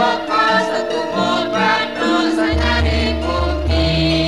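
Javanese langgam song: voices singing a lyric line over instrumental accompaniment, with a deep bass note coming in about halfway through.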